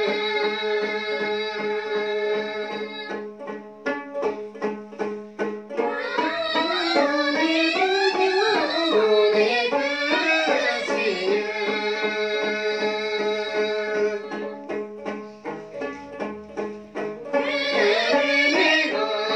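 A group of women singing a traditional Dolpo song together, accompanied by a woman singing and strumming a long-necked Tibetan lute (dranyen). The voices drop out about three seconds in and again around fourteen seconds, leaving quick rhythmic strumming of the lute, then come back in.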